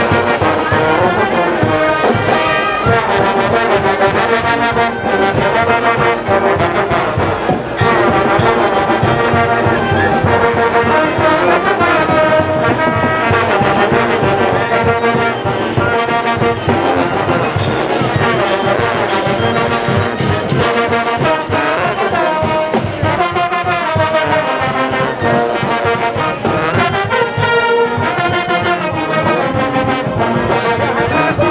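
A brass band playing music, with many horns sounding together at a steady, loud level.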